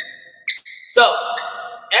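A man speaking a single word, with a short high squeak about half a second in from a court shoe gripping the floor as he steps into a wide stance.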